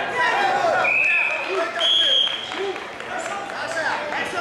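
A referee's whistle blown in two short, steady blasts, the second higher than the first, stopping the wrestling action, over scattered shouts from the hall.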